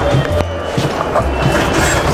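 Background music with a pulsing bass beat. Under it, a glass bookshelf cabinet door rolls along its track as it is slid open.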